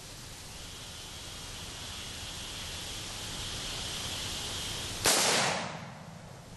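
A single shot from a Bushmaster AR-15 rifle about five seconds in, sharp and loud, with a ringing tail that dies away over about half a second.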